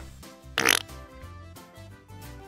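Soft background music, with one short noisy squelch about half a second in as a lump of yellow Play-Doh is pulled out of its plastic tub.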